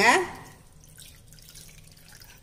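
Faint wet drips and splashes from a hand squeezing and mixing tomato rasam in a small steel pot.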